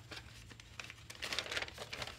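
A thin, see-through fibrous paper sheet rustling and crinkling as it is handled, unfolded and smoothed flat by hand, with a run of louder rustles in the second half.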